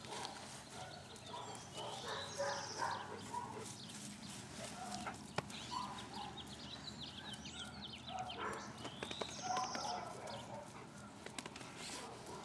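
Birds singing outdoors: one bird repeats the same short phrase, a rising note then a high trill, twice about seven seconds apart, among other scattered chirps. A single sharp click comes about five seconds in.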